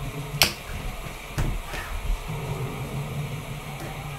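Leather being hand-stitched: thread pulled through the stitching holes and drawn tight, with a sharp snap about half a second in and a softer one about a second later, over a steady low hum.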